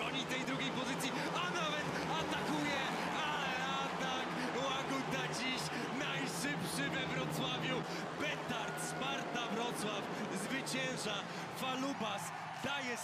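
Speedway bikes' 500 cc single-cylinder engines running in a race, a steady drone under a commentator's excited voice and crowd noise.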